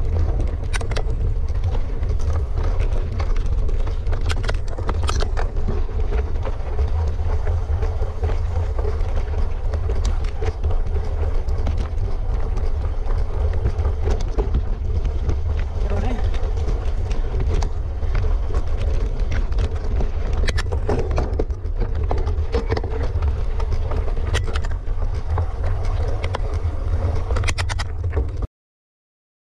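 Wind buffeting a bike-mounted action camera on a rough dirt trail descent: a constant deep rumble, with frequent knocks and rattles as the bike jolts over the ground.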